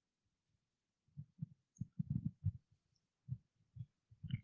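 Microphone handling noise: a run of soft, low, irregular thumps starting about a second in.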